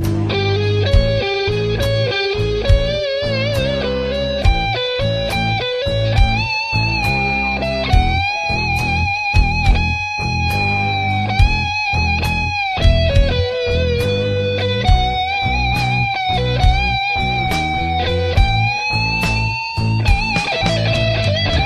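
Instrumental stretch of a rock song: an electric guitar lead plays long, held notes with vibrato and slow bends over bass and a steady drum beat.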